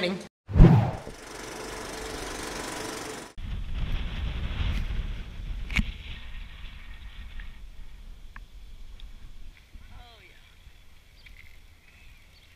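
A knock, then a steady even hiss of hard rain for about two and a half seconds. It cuts to a low rumble of wind on the microphone with a single click, which fades to quiet outdoor air by the last couple of seconds.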